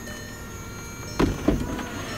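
2012 Volkswagen Eos power folding hardtop closing: a steady mechanism hum with thin whining tones, then two thunks about a quarter second apart, a little past a second in, as the roof panels come down into place.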